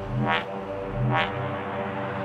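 Electronic dubstep music: held synth pad chords with two swelling low hits about a second apart.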